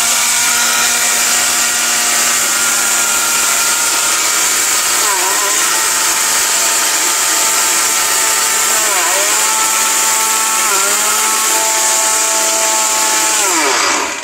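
ORPAT mixer grinder's motor running at full speed with its small stainless-steel dry-grinding jar, grinding a dry ingredient into a fine powder. A loud, steady whine runs over the noisy rush of the grinding. The pitch dips briefly about three times, near five, nine and eleven seconds in, as the load shifts, then the motor cuts off near the end.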